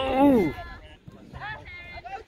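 Shouting voices: one loud, high-pitched shout that falls in pitch at the start, then a quieter call about a second and a half in.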